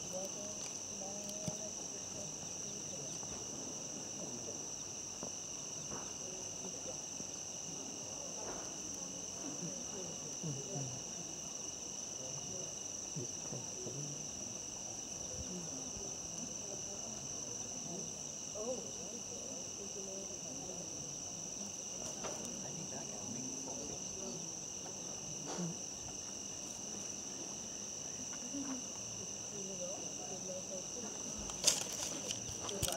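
Steady, unbroken high-pitched chorus of night insects, with faint low murmuring and a few soft knocks underneath.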